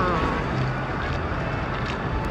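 Steady rush and splash of water running off the waterslides into the splash pool, with some wind on the microphone. A brief laugh at the very start.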